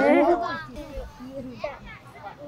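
Children's voices calling out on an outdoor football pitch, faint and scattered after a louder voice in the first half second.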